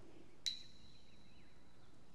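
A single sharp clink about half a second in, ringing on as one high tone that fades away over about a second and a half, with faint bird chirps behind it.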